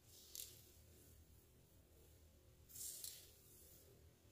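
Near silence with two faint swishes, a short one about a third of a second in and a longer one near three seconds in: long, straightened hair rustling as it is shaken and tossed.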